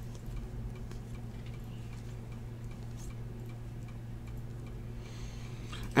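Topps Chrome baseball cards being handled and sorted by hand: a few faint ticks as the cards slide over one another, over a steady low electrical hum.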